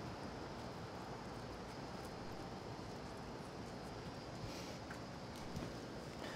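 Quiet room tone: a faint steady hiss with a few soft, faint ticks.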